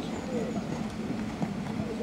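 A horse cantering, its hoofbeats landing on sand footing, with voices talking in the background.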